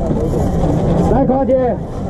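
Voices over a steady low background rumble: indistinct talking in the first second, then a raised voice calling out clearly from about halfway in.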